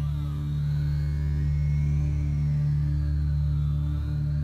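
A doom metal band playing a slow ambient drone on amplified guitars: a deep held chord that stays steady, with swirling effect sounds that glide down and up in pitch above it.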